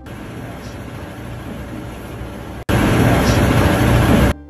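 Steady rushing background noise from an amplified outdoor phone recording, with no clear speech. It cuts out for an instant about two-thirds through and comes back markedly louder, as the clip is replayed with the gain turned up.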